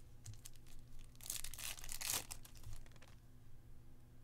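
Foil wrapper of a baseball card pack being torn open and crinkled: a rustling burst about a second in that lasts about a second, with light clicks of cards being handled around it.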